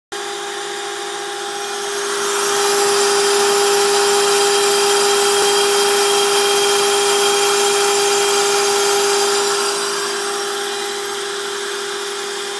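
Homemade CNC router's small trim-router spindle, with its dust-extraction vacuum, running as it carves a groove through blue foam board: a steady high whine over a hiss. It grows louder a couple of seconds in and eases back near the end.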